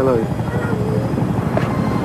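Military helicopters flying in formation overhead: a steady low rotor beat, with people's voices talking over it.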